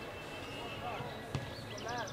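A football kicked once, a single sharp thud about a second and a half in, over faint distant shouting from the pitch.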